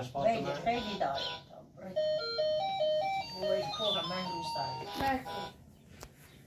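A simple, tinny electronic tune of steady beeping notes that step up and down in pitch, from a child's ride-on toy car, plays for about three and a half seconds after a couple of seconds of voices.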